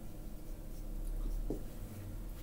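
Felt-tip marker scratching across a whiteboard as words are written in short strokes, over a steady low electrical hum.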